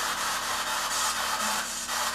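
Spirit box radio static: a steady hiss as the device sweeps through radio frequencies, with no clear voice fragment.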